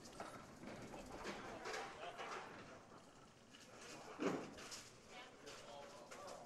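Faint bowling alley ambience: low crowd chatter and scattered knocks and clatter of candlepins and pinsetter machinery, with a short louder voice about four seconds in.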